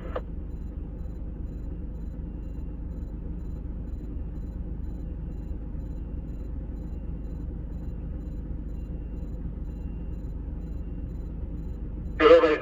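Steady low engine hum of idling vehicles, heard from inside a vehicle's cabin while a heavy-haulage truck crawls slowly with its concrete-beam trailer. A faint high tick repeats at an even pace throughout.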